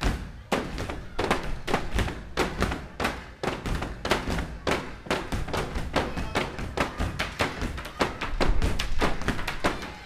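A step team's stomps and cane strikes on a stage floor in a fast, steady rhythm of several hits a second, loudest near the end.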